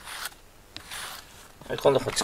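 Rubber grooming brush rasping through a cat's fur in short strokes, with a louder sound near the end.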